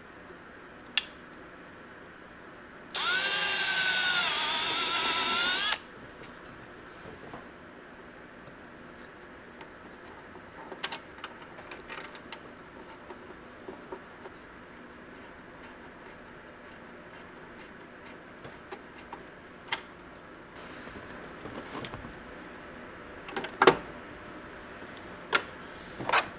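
Cordless drill running for about three seconds, boring a hole through the plastic dashboard panel; its whine dips slightly in pitch under load and then recovers. After that come scattered small clicks and knocks from a screwdriver fitting a small hanger bracket, with one sharp click near the end.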